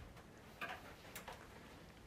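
Near-quiet room tone with two or three faint, short ticks or taps around the middle.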